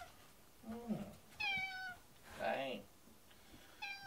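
A domestic cat meowing up at its owner: two long, slightly falling 'naa' calls, about a second and a half in and again near the end, the attention-seeking meow its owners read as 'come over here'. A person's short voice answers between the calls.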